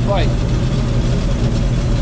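Combine harvester running, heard from inside its cab: a steady low engine drone.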